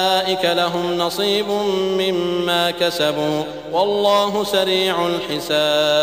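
A man chanting Quranic Arabic in the melodic recitation style, drawing out long held notes that step up and down in pitch, with short pauses between phrases.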